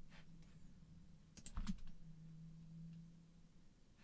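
A few sharp computer keyboard and mouse clicks, the loudest about one and a half seconds in, over a faint steady low hum.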